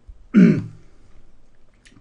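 A man clears his throat once, a short, loud rasp about a third of a second in.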